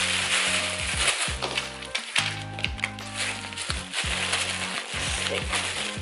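Tissue paper crinkling and rustling as it is folded and pressed down over the contents of a cardboard shipping box, over background music with low bass notes.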